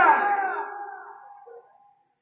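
A man's voice through a PA microphone holding the last drawn-out note of a chanted sermon phrase, fading away over about a second and a half, then silence.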